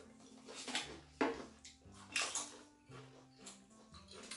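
A few short, sharp crunches and clicks of Pringles potato crisps being pulled from the can and bitten, with faint background music underneath.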